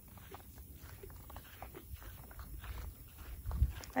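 Soft, scattered footsteps through dry grass, with a low rumble on the microphone underneath.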